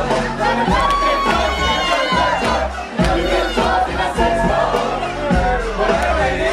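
A dancing crowd shouting and cheering over loud dance music with deep bass, with a long high shout or whistle held for over a second near the start.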